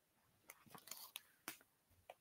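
Near silence, with a few faint, short clicks from plastic ink pad cases being handled and picked up.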